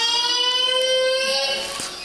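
A single held tone that rises slightly in pitch and fades out near the end.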